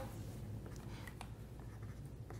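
Faint scratching of pens writing on paper on a tabletop, with a few light ticks.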